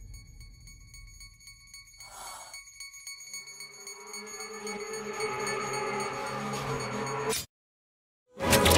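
Dark suspense trailer music: a faint fading rumble, a brief hiss about two seconds in, then sustained low notes that swell steadily louder and cut off abruptly to silence near the end.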